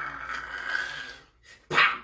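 A man's drawn-out, high-pitched whining groan of mock disgust, then a short sharp yelp near the end.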